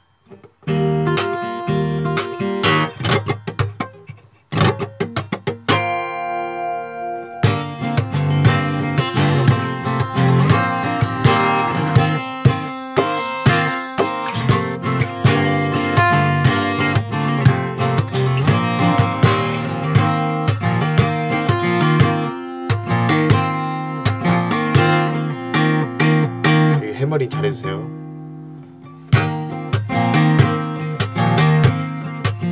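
Steel-string acoustic guitar in open C-G-D-G-A-D tuning, played fingerstyle with percussive slaps and taps on the strings: a short phrase, a chord left ringing about six seconds in, then a steady rhythmic passage of plucked notes and sharp hits that drops off briefly near the end.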